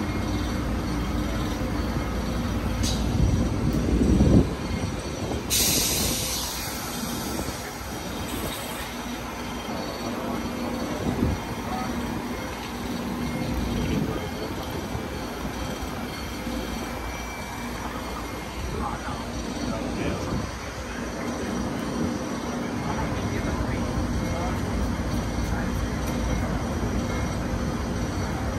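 A CP Alfa Pendular electric passenger train moving along the adjacent track with a steady low rumble, swelling about four seconds in. A sharp burst of air hiss follows for a few seconds.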